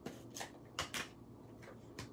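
Paper and cardstock being handled: about five brief, faint rustles and taps, the two loudest close together near the middle.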